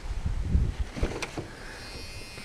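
Low, uneven rumble of wind and handling noise on the camera microphone, with a few dull thumps and one sharp click just over a second in.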